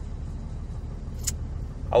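Steady low rumble of a car heard from inside its cabin, with a short hiss a little over a second in.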